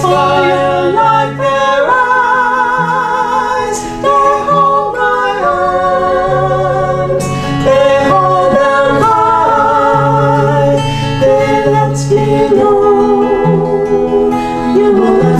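Two women singing a song together, accompanied by a strummed acoustic guitar; the voices are sung with a noticeable vibrato.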